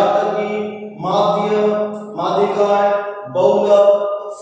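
A man's voice lecturing in Hindi, in phrases about a second long, each held on a fairly steady pitch with short breaks between them.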